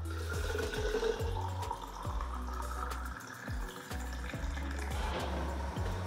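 Water running from a purifier tap into a plastic water bottle, the pitch of the filling creeping upward as the bottle fills, over background music.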